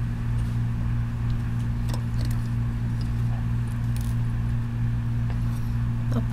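Steady low electrical hum, with a few faint light metallic clicks about two and four seconds in as fabric and the bias binder foot are handled at the presser foot of a Singer Featherweight sewing machine.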